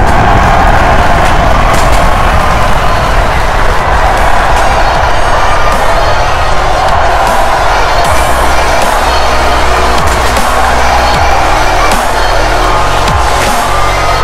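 A crowd screaming and cheering loudly without a break, over music with a heavy bass line that comes through more clearly in the second half.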